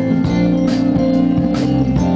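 Indie pop band playing live: an instrumental passage with electric guitar, bass and a steady drum beat, no vocals.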